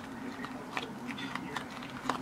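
Faint, soft handling sounds of hands rolling a wet rice-paper spring roll on a plate, with a few light clicks.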